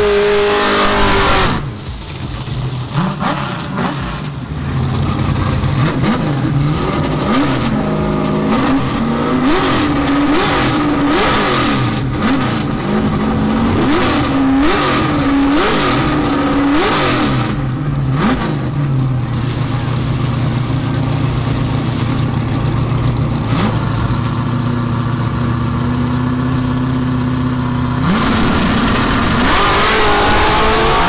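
Fox-body Mustang drag car's V8 at high revs as its burnout ends, then quick repeated throttle blips as it creeps in to stage. It holds a steady higher note on the line, then rises sharply at full throttle as it launches near the end.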